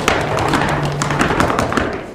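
Contemporary chamber ensemble of violin, cello, piano and clarinet playing a dense, irregular patter of taps and clicks on their instruments over a low held note, in place of the pitched lines just before.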